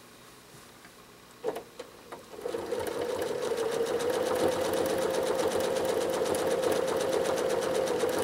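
Janome Horizon 7700 sewing machine free-motion quilting. After a couple of clicks it starts stitching about two seconds in and runs at a steady fast speed, with a constant hum and rapid, even needle strokes.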